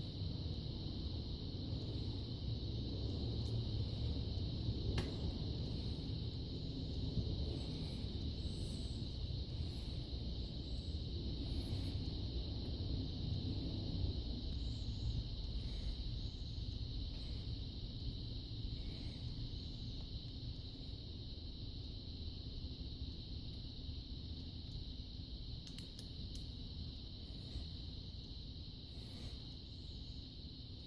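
Steady low background rumble with a constant high hiss. A few faint clicks come from small plastic and metal cartridge parts being handled, one about five seconds in and a couple more near the end.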